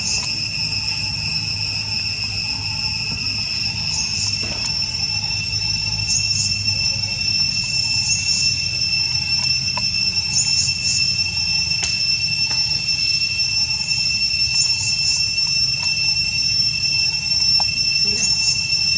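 Steady, high, ringing drone of insects in the forest, with brief higher chirps every couple of seconds and a low rumble underneath.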